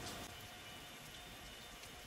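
Quiet pause: a faint steady hiss with a thin, faint steady tone underneath, and no distinct sound event.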